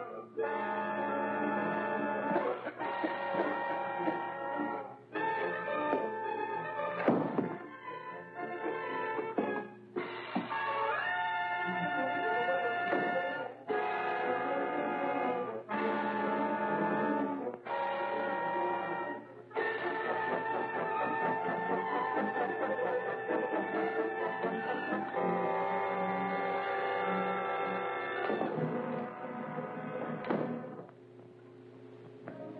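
Dramatic orchestral film-serial score: loud held chords that break off and start again every two or three seconds, then a longer sustained passage through the second half.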